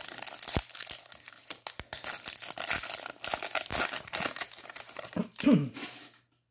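Plastic trading-card pack wrapper being torn open and crinkled by hand, a steady run of crackling, then a throat clear near the end.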